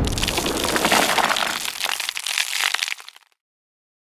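Logo-reveal sound effect of stone cracking: the tail of a heavy hit runs into a dense crackling and crumbling that fades out and stops about three seconds in.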